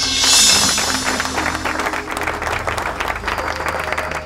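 Applause, many hands clapping, over a burst of stage music that opens with a bright crash and fades over the first second. The applause greets a newly introduced contestant.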